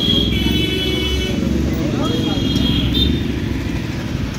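A motor vehicle's engine running close by in street traffic, a steady low rumble, with a high whine during the first second and a half and again briefly about two and a half seconds in.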